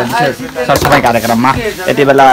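Speech only: a man talking steadily in Nepali.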